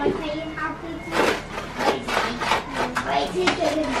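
Indistinct chatter of adults and children in a small room, with a few short knocks and rustles among the voices.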